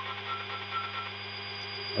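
Steady machine hum from a CNC milling simulation's sound track, with a faint high whine and a few faint short tones in the first second.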